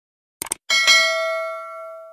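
Subscribe-animation sound effect: a quick double mouse click about half a second in, then a notification bell dings and rings on, slowly fading.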